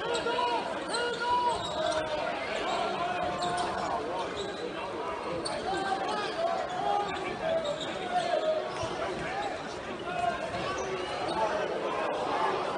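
Basketball being dribbled on a hardwood court during play, with spectators' indistinct chatter around it in a large arena.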